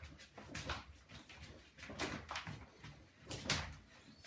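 A handful of short swishes and rustles as a resistance band tied to a door is pulled hard and let back, with bare feet shifting on a wooden floor.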